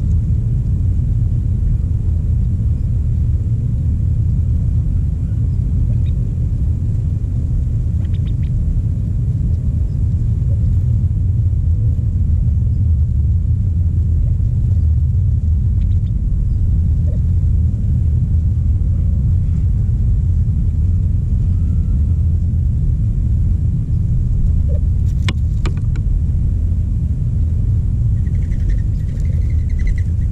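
Wind buffeting an action camera's microphone: a steady low rumble, with a few faint sharp clicks over it.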